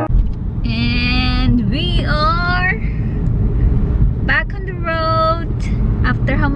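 Steady low road and engine noise inside a moving car's cabin, with a woman's voice over it in three short spells.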